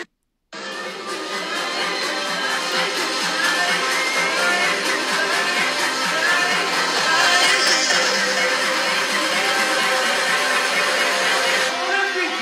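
Loud dance music from a DJ set in a packed nightclub, recorded on a phone so it sounds thin with no deep bass. It starts after a half-second drop to silence.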